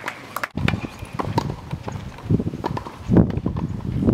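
A tennis ball being bounced on a hard court before a serve: a series of sharp taps at irregular spacing, with low rumbling thuds underneath.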